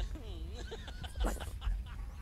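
A man's stifled, wavering laughter, held back behind his hand.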